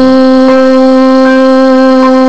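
Music: a single instrument note held steady at one pitch, with no singing, in a Christmas song medley.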